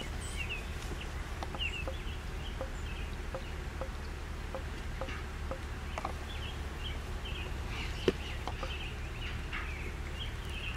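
Birds calling: many short high chirps, with a regular run of short lower notes about twice a second, over a steady low rumble. A single sharp knock sounds about eight seconds in.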